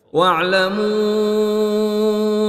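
A man reciting the Quran in Arabic in melodic tajwid style. Just after a brief silence he begins a verse with an ornamented rising phrase that settles into one long, steady held note.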